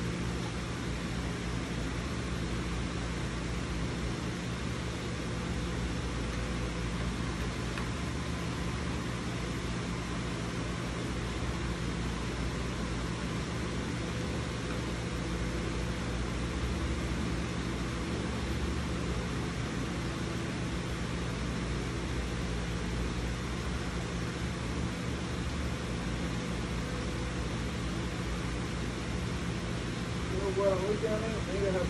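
A steady hiss with a low, even hum under it, unchanging and with no distinct clicks or knocks, like a fan or air conditioner running in the room.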